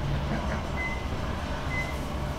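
Glass elevator car in motion: a steady low rumble of the running car, with two short high beeps about a second apart.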